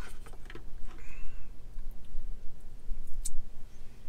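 Faint clicks and short scrapes of a fork against the pie's packaging as a frozen pie slice is worked loose, over a steady low hum inside the car cabin.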